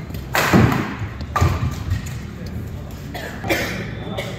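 Badminton rally in a large reverberant hall: a few sharp racket hits on the shuttlecock, the loudest about a third of a second in, another just after a second in, and one more near the end.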